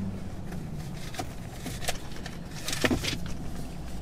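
Steady low hum inside a parked car, with a few light clicks and paper rustles as a parking ticket is handled.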